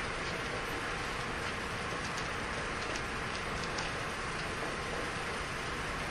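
Steady background hiss with a faint low hum: the room tone of a recorded lecture, with no one speaking.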